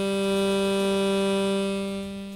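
A single held musical note, steady in pitch with many overtones, tapering near the end.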